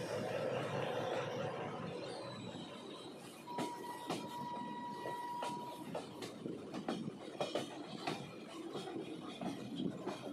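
Passenger train wheels running over the rails with a rumble that eases off, then irregular clicks and clacks over rail joints. A steady high squeal lasts about two and a half seconds, a third of the way in.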